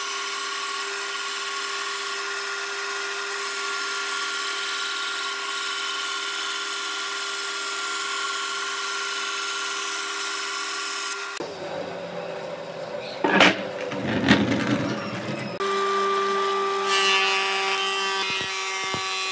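Band saw running steadily as its blade cuts through a thick old wooden beam. About eleven seconds in, this gives way to a couple of loud knocks, and then a wood planer's motor runs steadily near the end.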